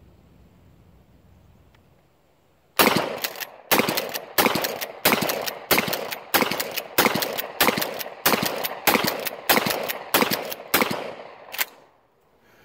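Mossberg pump-action shotgun fired in quick succession, about thirteen shots of mini shells loaded with number four buckshot, one roughly every two-thirds of a second, starting about three seconds in, the action pumped between shots.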